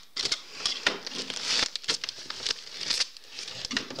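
Yellow padded plastic mailer crinkling and rustling as it is slit open with a utility knife and pulled about by hand, with irregular scratchy clicks of the blade and wrapping.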